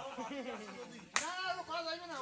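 People talking, with one sharp slap or clap a little over a second in.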